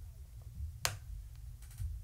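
A short pause between a man's phrases: a steady low hum, one sharp click just under a second in, and a few faint ticks near the end.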